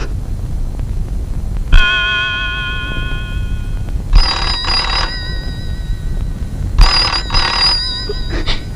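A black rotary telephone ringing with two double rings about two and a half seconds apart. Before them comes a single struck chime that rings for about two seconds.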